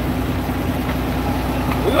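Semi truck's diesel engine running steadily, a low even hum heard from inside the cab.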